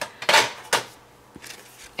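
Card stock being handled and laid down on a cutting mat: a light tap, a short papery rustle, then another sharp tap.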